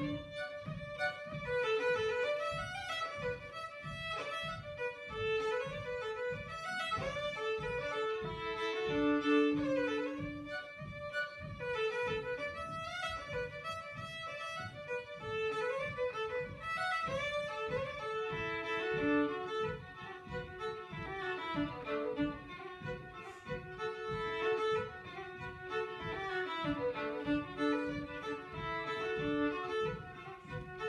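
Solo fiddle playing an Irish traditional dance tune: quick runs of notes broken by occasional longer held notes.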